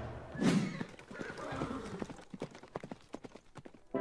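Galloping horse hoofbeats, a run of sharp clip-clops that fade away, after a short swelling burst about half a second in.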